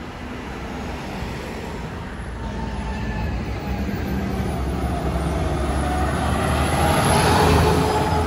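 A fire engine's diesel engine and tyres growing steadily louder as the truck approaches, loudest as it passes close by near the end. No siren is sounding.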